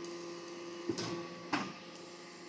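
Hydraulic interlocking soil brick machine running: a steady hum from its motor and hydraulic system, with two short clicks about a second and a second and a half in.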